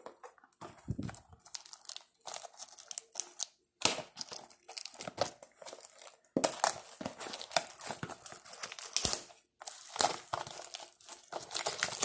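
Plastic trading-card packaging crinkling and tearing, in scattered crackles at first and then a dense, louder run of crinkling from about halfway through.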